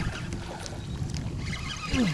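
Low, steady rumble of a small boat on the water, with faint scattered ticks.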